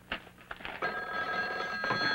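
A click, then a telephone bell starts ringing a little under a second in and keeps ringing steadily.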